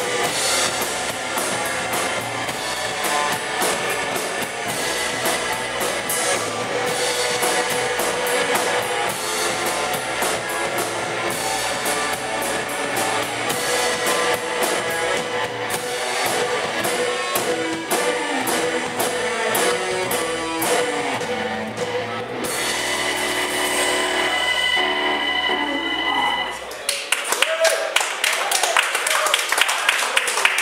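Live rock band playing: drum kit, bass guitar, electric guitar and keyboard together. About 22 seconds in the drums stop and held chords ring on, then die away near the end as the song finishes.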